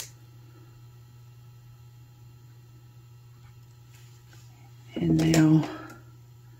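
A single sharp metal click as chain-nose pliers close a small jump ring on a lobster clasp, then a faint steady hum. About five seconds in, a person's voice is briefly heard, louder than anything else.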